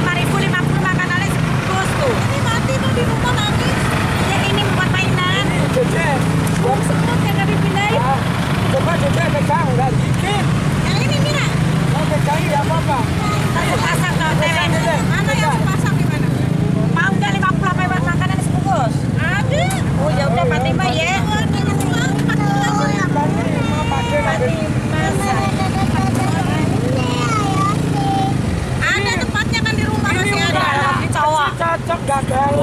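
Indistinct chatter of several people, with a steady low rumble of street traffic underneath.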